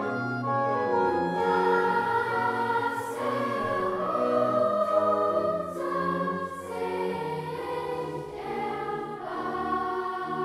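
Large youth choir singing sustained chords with instrumental accompaniment under a steady bass line, in a reverberant church.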